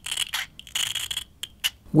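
A thin metal opening tool scraping and prying along the edge of a smartphone's metal heatsink plate: a few small clicks, then a rasping scrape of about half a second near the middle.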